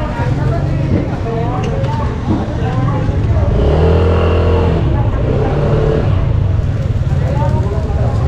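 Motorcycle engine running close by, louder and steady from about three and a half to five seconds in, then running on as it moves off.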